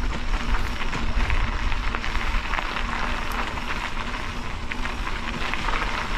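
Bicycle riding over a gravel trail: a steady rush of tyre noise with many small crunches and ticks from the gravel, over a constant low rumble of wind on the microphone.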